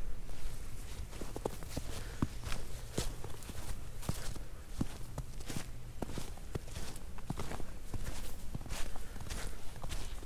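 Footsteps crunching in snow, an irregular run of short steps as someone walks along.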